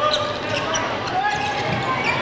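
Basketball being dribbled on a hardwood court, short knocks over the steady murmur of an arena crowd.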